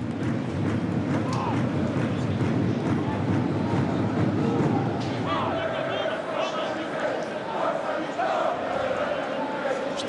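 Football stadium crowd: a steady din of many voices from the stands, with individual shouts or chanting rising above it from about halfway through.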